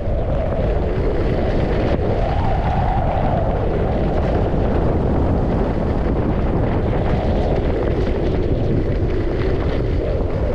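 Wind rushing over the microphone of a skier's camera on a downhill run, a steady low rumble, with skis sliding over snow beneath it.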